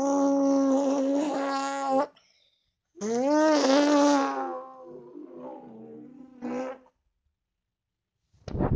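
A person's mouth imitation of a motorcycle engine, a buzzing lip trill: one held steady for about two seconds, then a second starting about three seconds in that rises in pitch, slides down and fades away.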